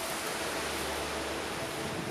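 Steady outdoor background hiss with a faint low rumble, and no distinct sounds in it.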